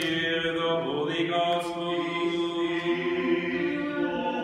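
Church choir chanting an Orthodox liturgical response, several voices holding long sustained notes together and moving to new notes about a second in and again near the end.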